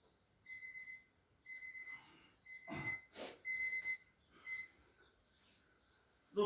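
An electronic timer beeping five times, about once a second: each beep is a steady high tone about half a second long, the last one shorter. It marks the end of a 30-second exercise interval. Near the middle, two short, sharp bursts of heavy breathing.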